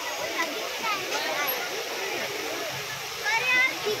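Fountain jets spraying into a lake, a steady rush of falling water, under the chatter of many people's voices; one louder, high voice rises above the crowd near the end.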